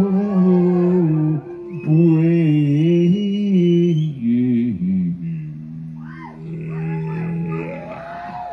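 A live band plays a slow passage in long, low held notes that step and bend in pitch. It is louder in the first half and eases into a softer, long held note toward the end.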